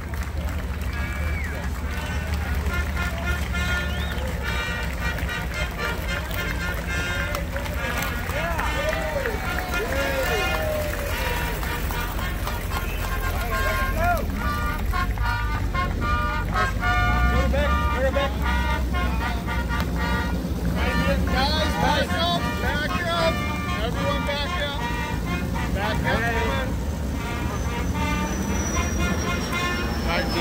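Low, steady engine rumble from a 1957 Ferrari 335S and a 1938 Mercedes-Benz 540K driving slowly onto the show field, louder about halfway through, under voices over a loudspeaker and crowd chatter.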